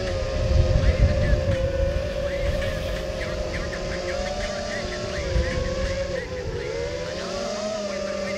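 Eachine Wizard X220 racing quadcopter whining steadily in flight. The pitch of its motors and props wavers with the throttle, dipping about six seconds in and climbing again. Wind buffets the microphone with a low rumble that is strongest in the first two seconds.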